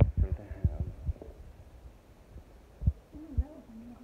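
Low, irregular thumps of a handheld phone's microphone being jostled while walking, thickest in the first second, with one more thump near three seconds. A faint voice is heard briefly early on and again near the end.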